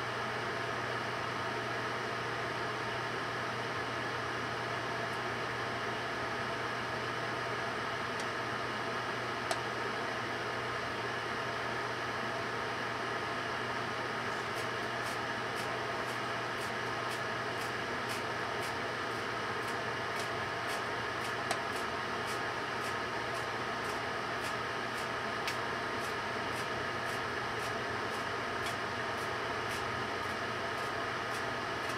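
Microwave oven running with a steady hum while a cordless drill burns inside it. From about halfway through, a run of faint ticks comes in, about two a second.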